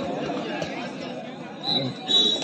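Crowd of spectators chattering, several overlapping voices with no single clear speaker, and a brief high tone near the end.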